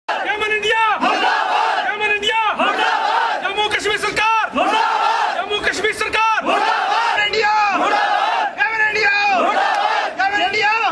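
A crowd of men shouting protest slogans in unison, short phrases repeated about once a second.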